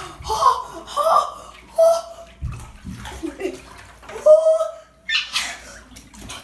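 Water sloshing and splashing in a bathtub of ice water as a person steps in and lowers himself down, with a louder splash about five seconds in. Short cries break in between the splashes.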